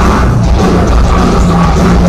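Heavy metal band playing live, loud and unbroken, heard from within the crowd.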